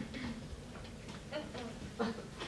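A quiet pause with a few faint, irregular ticks and clicks.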